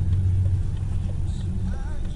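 Low, steady rumble of a car's engine and tyres heard from inside the cabin while driving, strongest in the first half second.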